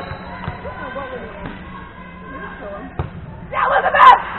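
A volleyball thudding a few times in a large gym, with players' voices calling out throughout. Near the end several girls shout loudly together, closing on a sharp smack.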